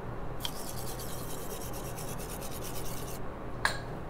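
A toothbrush scrubbing teeth in quick, even strokes, about seven a second, which stop about three seconds in. Just before the end comes a single sharp clink, as of the toothbrush being dropped into a ceramic cup.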